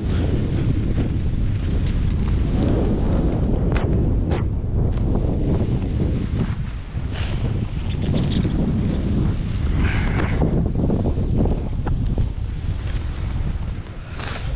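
Wind buffeting the microphone of a camera carried by a skier moving down a piste: a steady, loud low rumble with a brief lull about halfway through.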